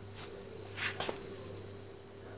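A few brief rustling scuffs and sharp clicks close to the microphone: an orange kitten pawing and scrabbling during play. One scuff comes near the start, then two more close together about a second in.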